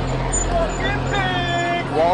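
Street noise with a steady low rumble of vehicle engines, and a voice calling out from about half a second in, holding one pitch for about a second.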